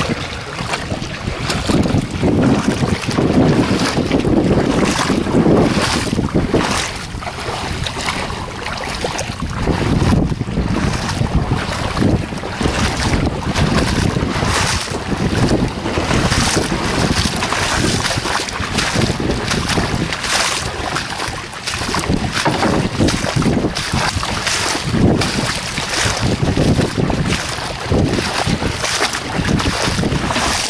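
Feet wading and splashing through shallow seawater, with gusts of wind buffeting the microphone.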